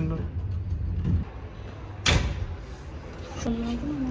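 Old cage elevator with a metal grille gate: a low rumble as the car runs, then a single sharp clunk about halfway through.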